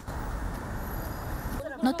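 Steady street ambience, mostly the low hum of city traffic. A voice starts speaking near the end.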